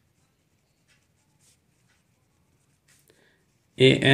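Pen writing on paper: faint, short strokes of the nib as words and symbols are written. A voice begins just before the end.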